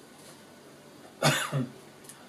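A man coughs twice in quick succession, the first cough the louder.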